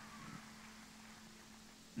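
Near silence: faint background noise with a steady low hum.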